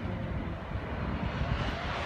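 A steady low engine drone in the distance, with a faint tone that rises slowly in the second half.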